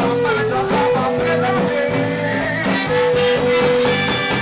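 Funk-rock band playing live: a steady bass line under a lead line that holds long notes, one of them for about a second near the end.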